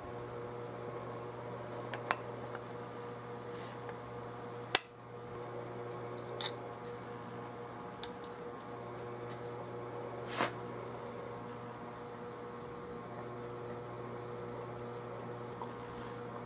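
Steady low hum in a small workshop, with a few light clicks and knocks of small metal gun parts and the wooden forend being handled and fitted. The sharpest click comes about five seconds in, and a short scrape comes near ten seconds.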